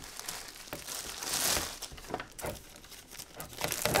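Clear plastic shrink wrap crinkling and rustling as it is handled and pulled off, with scattered small clicks, loudest about a second and a half in.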